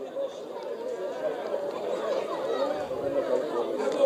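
Many voices talking and calling at once in the background of a football ground, a general chatter that grows slightly louder.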